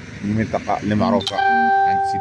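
A man's voice speaking briefly, then, just past the middle, a loud steady electronic-like tone with overtones that holds without wavering.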